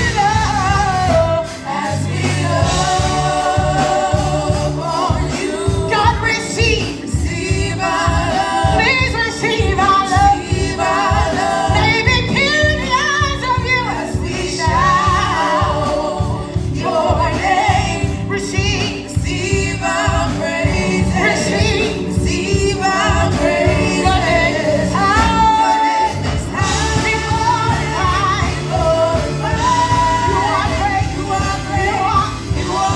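A gospel praise team of several voices singing a worship song together into microphones, over live band accompaniment with keyboard and a steady beat.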